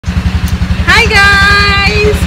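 A small engine running steadily close by, a low throbbing of about ten beats a second. From about a second in, a woman's voice rises into one long held note of greeting over it.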